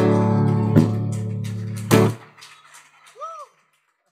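Closing chords of a live blues song on guitar: a held chord struck twice more, about a second apart, then damped and cut off a little after two seconds in. A short rising-and-falling tone follows near the end, then the track falls silent.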